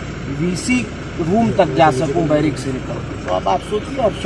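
Men's voices talking in short bursts, over a steady low rumble.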